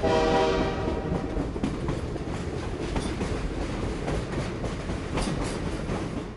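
A train sounds a loud chord-like warning blast that fades within about a second. It continues as the steady rumble of a running train, with a few sharp wheel clacks.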